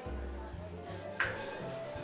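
Background music of an online live-roulette game, steady with a low bass line, and a single bright chime about a second in.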